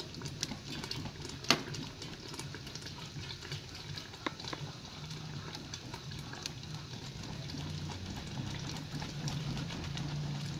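Covered pot of stew cooking on a charcoal clay stove: a scatter of small crackles and clicks, with one sharper click about one and a half seconds in. A low steady hum grows louder in the second half.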